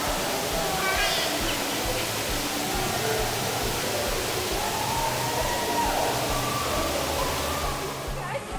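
Swimming pool ambience: a steady rush of water, with faint voices of swimmers in the background.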